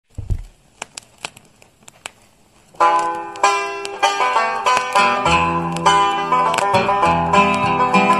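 A few light clicks, then an instrumental folk-song introduction on plucked strings starts about three seconds in, with a bass line joining a couple of seconds later.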